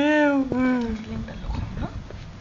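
Two drawn-out pitched vocal calls in the first second, the first arching up and down and the second sliding down at its end, then only faint background sound.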